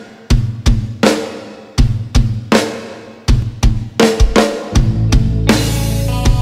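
Instrumental intro of a pop song from a band: drum kit hits ring out one at a time, roughly two a second. About five seconds in, the full band comes in with held bass notes and higher sustained tones under the drums.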